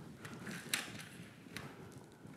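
PVA sponge mop head pulled across a carpet sample to draw up spilled coffee: a faint dragging with a few short, sharp clicks.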